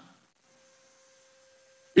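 A pause in a man's speech: near silence with a faint steady hum, which ends as his voice comes back in right at the end.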